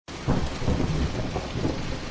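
Rain falling, with thunder rumbling low beneath it.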